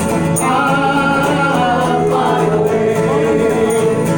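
Live bluegrass band playing a gospel number, with acoustic guitar, banjo, mandolin and upright bass under several voices singing long held notes in harmony.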